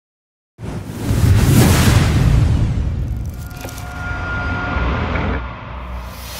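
Cinematic logo-reveal sound effects: a deep rumbling whoosh that starts suddenly about half a second in, swells, then slowly fades, with a brief metallic ringing tone in the middle and a falling swoosh beginning near the end.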